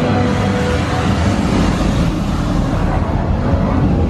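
Flight-simulator ride soundtrack played loud through the theatre speakers: a steady rushing rumble of wind and water effects with the music underneath, as the flight sweeps low over the ocean.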